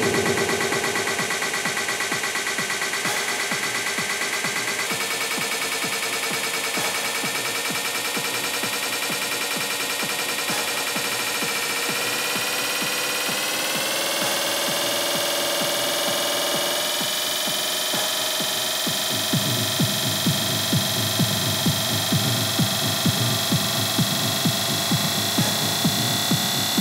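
Electronic dance music in a breakdown: held synth chords with no bass, sliding slowly upward in pitch midway through. About 19 seconds in, a steady kick beat comes back at about two a second.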